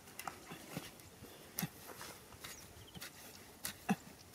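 Hands digging in wet mud, with irregular soft thuds and slaps as clods are scooped and tossed, about six hits, the loudest near the end.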